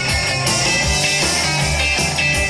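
Rock music: electric guitars with bass and drums on a steady beat.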